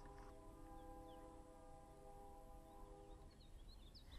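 Faint, near-silent outdoor scene: a steady humming tone with several overtones holds for about three seconds and then stops. Small birds chirp faintly near the end.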